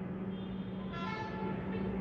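A faint horn toot of about a second, starting about a second in, over a steady low hum.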